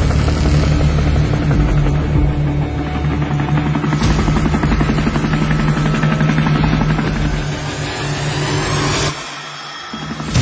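Loud background music with a steady low drone, a sharp hit about four seconds in, and a sudden drop to a quiet stretch near the end.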